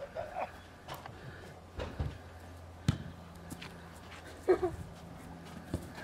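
A football being knocked about on grass by playing dogs: three sharp thumps, about one, two and three seconds in. A person laughs briefly near the end.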